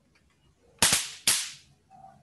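Two loud, sharp bangs about half a second apart, each dying away within half a second.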